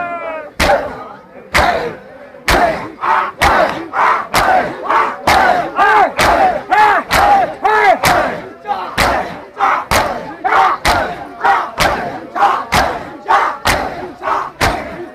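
A large crowd of mourners beating their chests with open hands in unison, about two sharp slaps a second, while they shout in rhythm between the strikes. The first strikes are spaced apart, and the steady beat takes hold about two seconds in.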